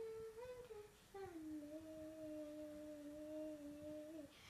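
A child humming without words: a few short changing notes, then one long steady held note from about a second in.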